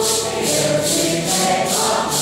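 A congregation singing a Santo Daime hymn together, holding long sung notes, over maracas shaken in a steady beat of about three shakes a second.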